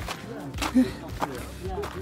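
Voices of people talking in low tones, with three footsteps on a dirt path about half a second apart.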